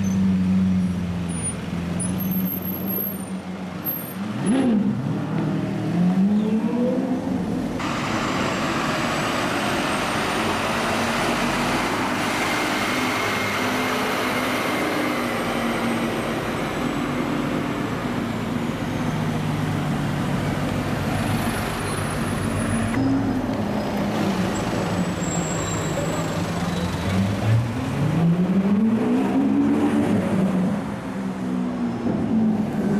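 Supercar engines in slow city traffic, among them a Lamborghini Aventador's V12, rising and falling in pitch as they rev. There are rising revs a few seconds in and again near the end, and a steady rush of traffic noise through the middle stretch.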